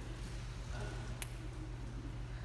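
Quiet hall room tone with a steady low electrical hum, and one short click about a second in.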